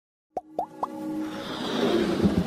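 Animated logo intro sound effects: three quick rising plops about a quarter second apart, then a gradually swelling rush over a held musical tone.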